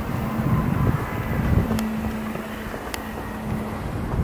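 Wind buffeting the microphone with a low rumble, under a steady low hum. Two sharp footfalls on steel grating stairs come about two and three seconds in.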